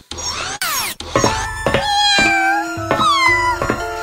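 Cartoon soundtrack music with plucked, held notes, over which a cartoon cat character gives several short meow-like calls that fall in pitch. A quick rising sweep sounds in the first second.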